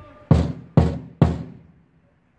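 Three loud bangs about half a second apart, each dying away briefly after the strike.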